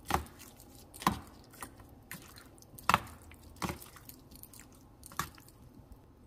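Metal spoon stirring curd rice in a stainless-steel bowl: about five sharp clinks of the spoon against the bowl, irregularly spaced a second or so apart, with faint stirring of the wet rice between.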